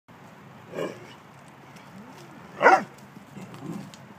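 Doberman giving two short play barks about two seconds apart, the second louder, with softer lower sounds between and after them.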